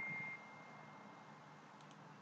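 A single high ringing chime tone dies away within the first half-second, then near silence with only room tone and a couple of faint clicks near the end.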